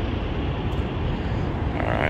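Steady low rumble of outdoor noise: wind buffeting a phone's microphone over the background sound of a truck-stop lot.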